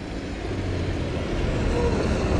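A city bus driving by on the street, its low engine rumble and road noise growing louder over the two seconds.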